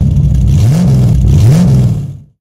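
Car engine revving over a steady run, with two rises in pitch. It starts suddenly and loud.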